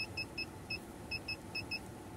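Eight short electronic beeps from an OBD-II/CAN bus tester's beeper, one per click as its Menu knob is turned to step through the connector pins. The beeps are high and identical, coming singly and in quick pairs at an uneven pace.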